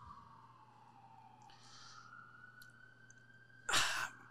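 A man sighs, a sharp breath out into a close microphone near the end of a quiet pause. Under it, a faint siren tone slowly falls and then rises again.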